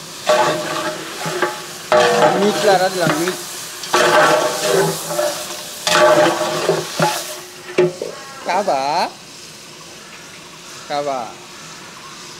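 A long metal ladle stirring beef and onions in a large metal cooking pot: four grating scrapes against the pot, about two seconds apart, each with a ringing metallic squeal, over the sizzle of the meat frying. Near the end the stirring turns quieter, with two short squeals of the ladle on the metal.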